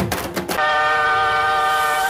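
A held, steady train-horn sound effect in the dance-mix soundtrack. It cuts in about half a second in, right after a fast percussion pattern, and holds for about a second and a half.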